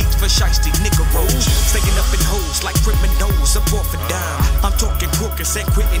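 Hip hop track: rapping over a heavy bass line and a steady drum beat.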